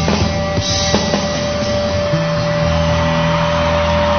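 Rock band music with drum kit and bass: a few drum hits in the first second, then a chord held ringing from about two seconds in.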